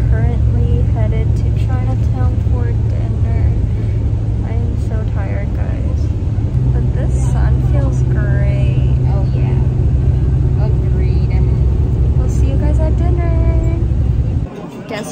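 Steady low rumble of a moving bus's engine and road noise heard inside the passenger cabin, rising slightly in pitch about six and a half seconds in. Other passengers talk faintly over it.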